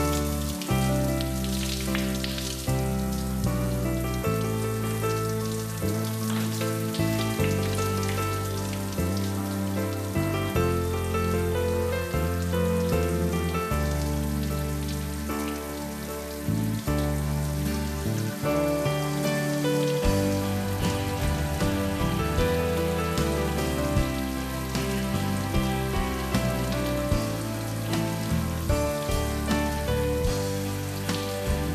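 Shower water spraying steadily, over background music of long held notes with a bass line that changes every second or two.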